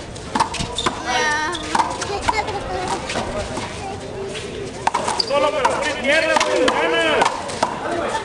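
A big rubber handball is struck by hand and slapped off concrete walls and floor during a fast rally, a run of sharp smacks and sneaker scuffs. Players shout briefly about a second in, and again from about five to seven seconds in.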